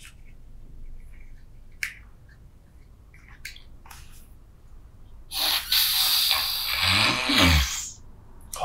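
A few faint sharp clicks, then about five seconds in a loud crinkling of a plastic licorice wrapper being handled for over two seconds, which stops abruptly just before the end.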